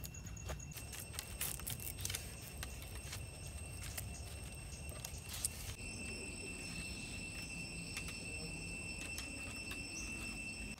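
Light wooden clicks and knocks as sticks are handled and fitted into a stick dome frame, over a steady high-pitched whine and a low background rumble.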